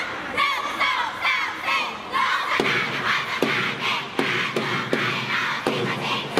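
A large cheering section of schoolgirls chanting and shouting in unison, in short rhythmic syllables. Steady drum beats join in about two and a half seconds in, a little over two a second.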